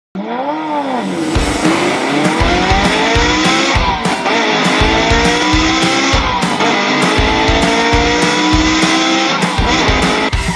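Intro music with a steady thumping beat, overlaid with a racing car engine accelerating up through the gears. Its pitch climbs in long sweeps and drops back at each shift, about three times.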